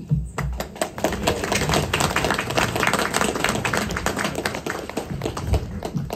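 A small audience applauding: many hands clapping at once.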